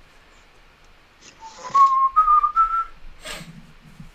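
A person whistling a short phrase of three or four notes that step upward, lasting about a second and a half, with a little breath noise around it.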